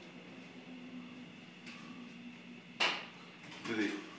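Faint steady electrical hum from a switched-on LRAD loudspeaker at its lowest setting, with one sharp click or knock about three-quarters of the way in.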